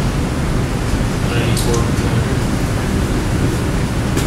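Steady classroom room noise, a low rumble and even hiss, with a faint distant voice briefly about a second and a half in.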